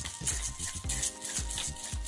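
A hand pepper grinder twisted over a pan of spinach, giving a run of short gritty grinding clicks, under soft background music that holds a steady chord from about a second in.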